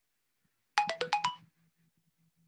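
A short electronic notification chime: about five quick notes, falling then rising, lasting under a second.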